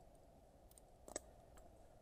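Faint clicks from tree-climbing gear being handled: a few small ticks, the sharpest about a second in, as a gloved hand works the lanyard and its carabiner.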